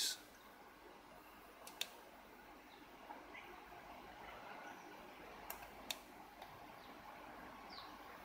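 Quiet background with a few faint, short clicks and a couple of faint, short rising chirps.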